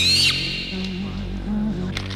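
Horror film score: a short, high, rising screech right at the start gives way to a low, sustained drone with a few held notes.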